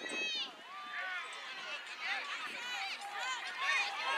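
Several distant voices calling and shouting, overlapping one another, from people around an outdoor soccer field.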